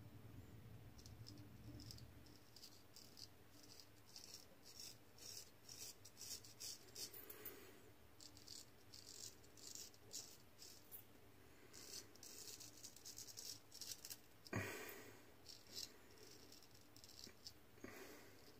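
Gold Dollar 66 straight razor scraping through stubble and lather on the neck in many short, faint strokes. One louder, brief noise about fourteen and a half seconds in.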